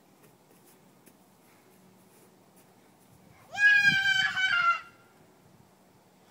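A young child's high-pitched squeal: one loud call of a little over a second, starting about three and a half seconds in and dropping slightly in pitch at its end.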